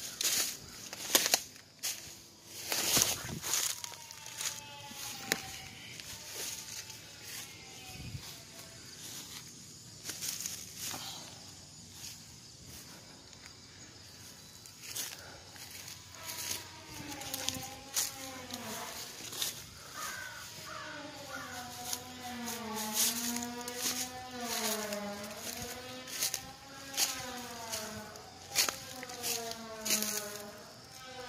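Footsteps crunching and rustling through dry weeds and brush, with many short crackles. From about halfway through, a voice hums a slow, wavering tune over the steps.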